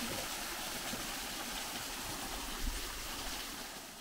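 Steady running water, the sound of a small cascade or stream, fading out near the end.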